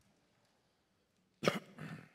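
A person coughing twice in quick succession, about a second and a half in, after a stretch of near quiet.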